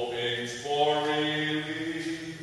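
A man's voice singing slow, long-held notes, with a new note starting about two-thirds of a second in.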